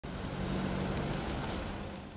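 Outdoor street ambience with road traffic: a steady low hum under a noisy hiss, easing off slightly near the end.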